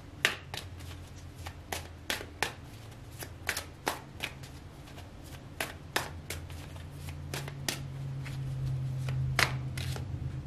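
A tarot deck being shuffled by hand: sharp card snaps, mostly in groups of two or three, about fifteen in all. A low steady hum runs beneath and grows louder near the end.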